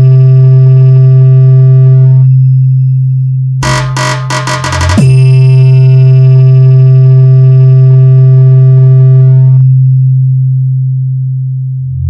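Hard-bass DJ competition mix: a very loud, sustained deep bass tone under a held synthesizer note. About four seconds in, a short stuttering, chopped burst breaks in; then the synth note returns and stops near the end, leaving the bass to fade.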